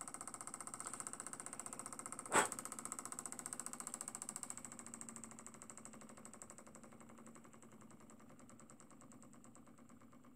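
Small homemade Stirling engine with a Pyrex test-tube hot end and brass cylinder running, its flywheel and linkage giving a fast, even ticking that grows gradually fainter. A single sharp click about two and a half seconds in.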